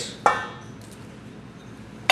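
A single clink against a stainless steel mixing bowl about a quarter second in, as eggs are tipped into the flour with a wire whisk resting in the bowl; then only low background.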